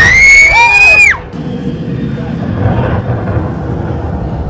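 A person's high-pitched scream, held for about a second and then breaking off. It gives way to a quieter, low rumbling film soundtrack in the cinema.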